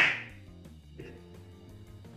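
A single sharp smack right at the start that fades over about half a second, then faint background music with a small click about a second in.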